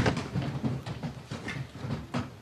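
A large audience getting to its feet in a hall: shuffling, rustling and scattered knocks from seats, dying down toward quiet.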